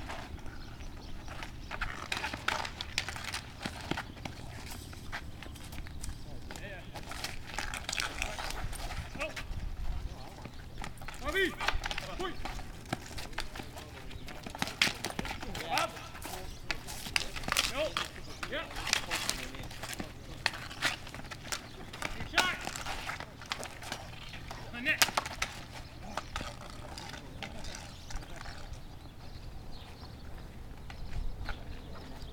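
Street hockey play on asphalt: hockey sticks clacking sharply and often against the ball and the pavement, with players' indistinct shouts now and then.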